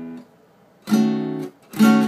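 Acoustic guitar strummed twice, about a second in and again louder near the end, each chord cut short after about half a second. The chord is a D-sharp minor seven flat five, with the first and sixth strings muted.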